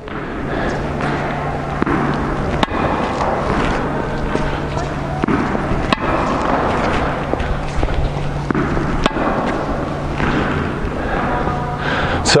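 Steady background noise with a low hum, broken by three sharp knocks spaced about three seconds apart.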